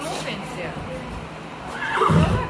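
A horse whinnies, loudest near the end, over the steady hum of a box fan.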